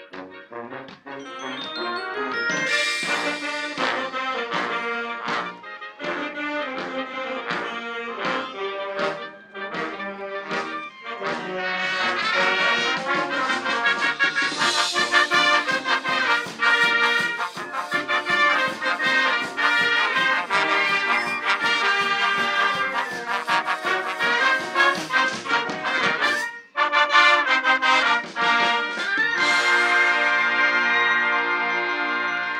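A live marching band plays, with sousaphones, trumpets, trombones, saxophones and clarinets. The music swells louder about twelve seconds in and breaks off for a moment near the end before the full band comes back in.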